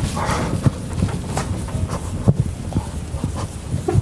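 Chalk tapping and scratching on a blackboard in a quick, irregular run of short knocks, as formulas are written.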